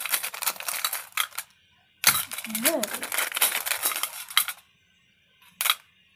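Coloring utensils clattering against each other and the wire-mesh pencil cup they are rummaged through, in two spells of dense rattling, the second stopping about three-quarters of the way in, with one short click near the end.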